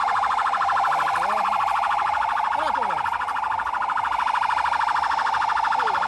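Police car siren sounding one steady, fast-pulsing tone that stops suddenly at the end. Crowd voices run faintly underneath.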